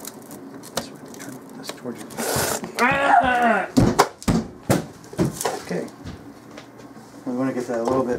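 A short hiss, then a person's voice calling out with its pitch sliding up and down, followed by several sharp knocks about four seconds in.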